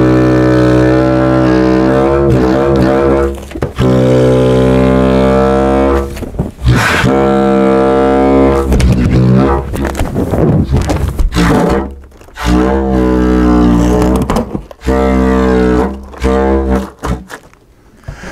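Homemade balloon bagpipe: air squeezed out of a large balloon held under the arm buzzes through the balloon's stretched neck over the end of a plastic pipe, making a loud, low, buzzy drone. It comes in several long blasts with short breaks, the pitch wavering and bending as the squeeze changes.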